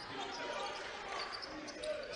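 Faint game sounds of a basketball being dribbled on a hardwood court, with low-level court noise and no crowd.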